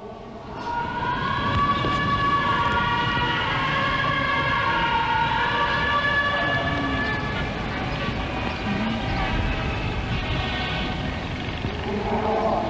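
A long, chanted voice holding slowly wavering notes that rise and fall over several seconds, over a steady low noise.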